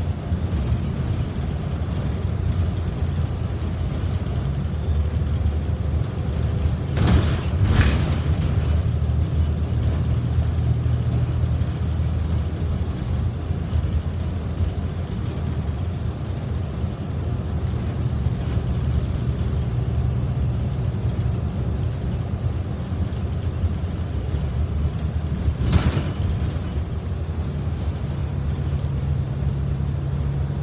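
Transit bus running on the road, heard from inside near the front: a steady low engine drone with road noise, its pitch shifting as the bus changes speed. Two short, loud noisy bursts come about seven seconds in and again about three-quarters of the way through.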